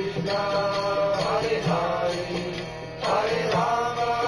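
Devotional kirtan: voices singing a mantra chant with instruments and a regular percussion beat, the melody holding and sliding between notes.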